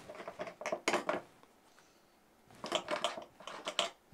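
Die-cut card pieces and small craft tools being handled on a cutting mat: two spells of rustling and light clicking, one in the first second and one in the last second and a half.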